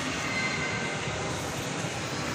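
Steady, even background noise of a large shopping-mall interior: a constant wash of room and air-handling noise with no distinct events.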